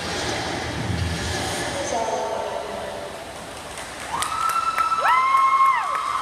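Spectator crowd noise with voices in a large indoor pool hall, then, about four seconds in, a loud held tone in several pitches at once that slides up, holds, and slides back down.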